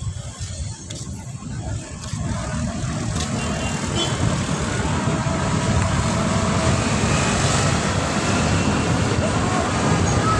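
Road traffic noise, a rushing sound that builds up over the first few seconds and then stays steady and loud.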